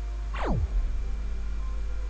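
A quick falling swoosh sound effect, its pitch dropping steeply from high to very low about half a second in, over a steady low hum.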